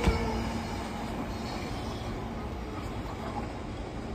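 Doctor Yellow (Class 923) shinkansen inspection train running away down the line, its rumble of wheels and air dying down in the first second and then holding as a steady low rumble, with a faint steady hum in the first couple of seconds.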